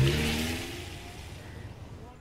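A vehicle passing close by and moving off, its engine note falling in pitch and fading away through the first half.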